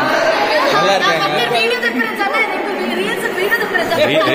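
Chatter of a small group talking at once, several voices overlapping, with the echo of a large hall.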